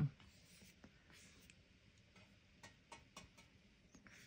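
Faint scratching of a paintbrush stroking over wet watercolor paper, with a few faint light ticks.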